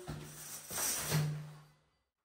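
Faint rustling and handling noise with a low steady hum underneath, louder around the middle, fading out to silence near the end.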